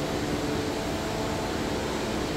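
Steady, even hiss and low hum of an air-conditioned airport terminal hall's ventilation.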